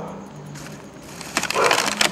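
Plastic bottles and litter crackling and crinkling under searching hands in a short loud burst about a second and a half in, over a steady low hum.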